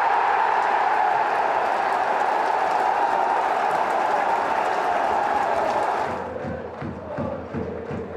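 Football stadium crowd roaring and cheering a goal, a loud steady roar that drops off about six seconds in, giving way to quieter chanting and clapping.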